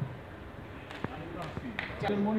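Faint murmur of voices in a studio hall, with a few sharp knocks or thuds about a second in and near the end.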